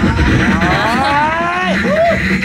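Live beatboxing into a microphone: a low bass-and-kick pattern runs under a pitched, humming vocal line. The vocal line glides slowly upward, drops away sharply near the end, then gives a short arching note.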